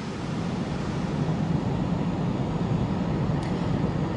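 Steady rumble and hiss at a burning house as firefighters play a hose stream onto the flaming roof, growing slightly louder.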